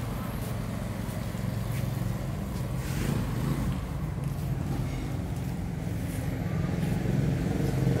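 Suzuki Satria two-stroke motorcycle engine idling steadily.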